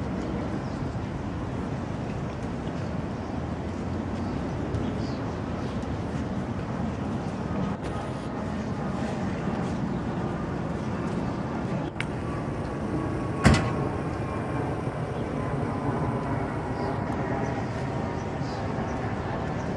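Steady outdoor street noise: a low vehicle rumble with faint voices, and one sharp knock a little past two-thirds of the way through.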